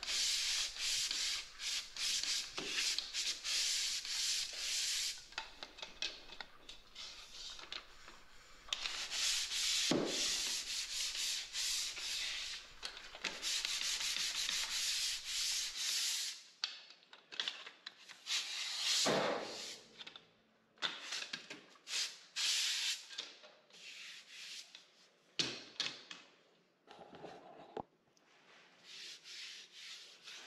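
Pole sander's abrasive pad rubbing over a dried joint-compound skim coat, in long runs of quick back-and-forth strokes in the first half and shorter, separated strokes after that.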